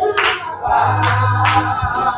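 Gospel song sung with hand-clapping on the beat, about two claps a second, and a low bass note held through the middle.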